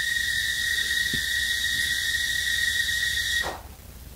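A steady high-pitched whistling tone with a fainter overtone above it and a hiss, which cuts off suddenly about three and a half seconds in.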